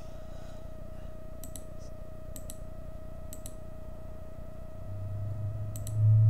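Computer mouse clicking: four quick double clicks (press and release), the first three about a second apart and the last near the end. A steady faint hum runs underneath.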